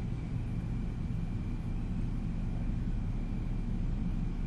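Steady low background hum with a light hiss, unchanging throughout, with no distinct events.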